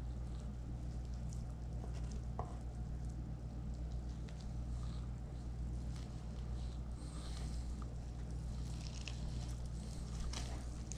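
Hands pulling and tearing meat from a roasted chicken carcass: soft wet squishing with scattered small crackles of skin and meat, busier near the end, over a steady low hum.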